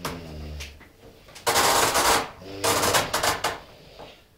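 Rummaging in a kitchen cupboard under the sink: two loud bursts of rattling and clattering, about a second and a half in and again near three seconds, after a short low-pitched sound at the start.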